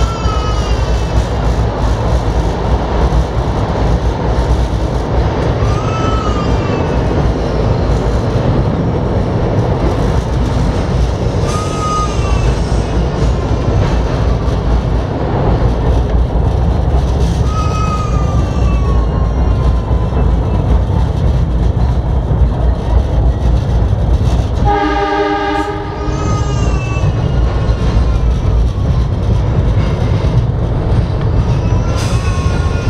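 A train running, heard from inside a passenger car: a loud, steady rumble of wheels on rail. Brief rising-and-falling squeals recur about every six seconds. About 25 seconds in comes a short, one-second horn blast.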